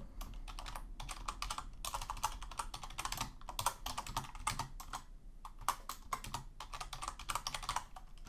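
Typing on a computer keyboard: a quick, irregular run of key clicks, with a short lull a little after halfway.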